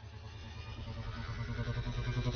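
Film sound design and score: a low, rapidly pulsing rumble that swells steadily louder, with a thin high shimmer above it.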